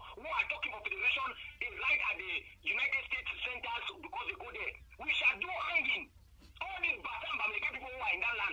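A person talking over a telephone or call line, in phrases broken by short pauses, the voice thin and narrow as on a phone connection.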